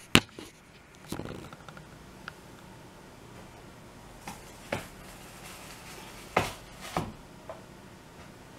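Handling noises of work on a metal chair and its foam seat: scattered sharp knocks and clicks, the loudest a pair about six and seven seconds in.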